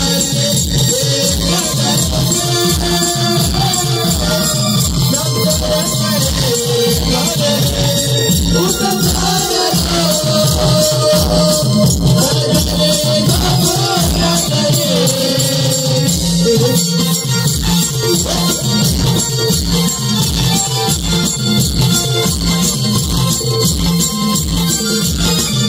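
Live Konkani Naman folk music: barrel drums beat a fast, steady rhythm, with a high jingling percussion on the beats and a wavering melody line above.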